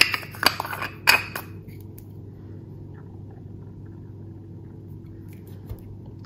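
Lid being put back on a glass cosmetic cream jar: a few sharp clicks and clinks of the cap on the glass in the first second and a half, followed by only a faint steady hum.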